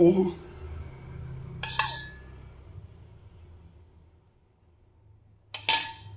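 Metal spoon clinking against dishware twice, once about two seconds in and again near the end, each a short chink with a brief ring.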